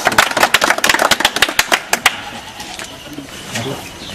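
A small group of people clapping their hands, the claps stopping about halfway through.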